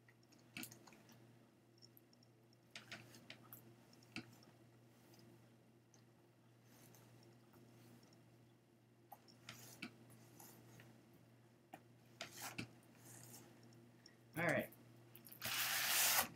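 Soft, faint rustling and light clicks of wool and denim fibers being laid and smoothed by hand onto the carding cloth of a blending board, over a low steady hum. Near the end comes a louder, brief scratchy brush stroke as a brush pushes the fibers down into the cloth.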